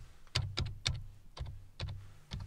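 Keystrokes on a computer keyboard as a short command is typed: about five separate key presses, unevenly spaced.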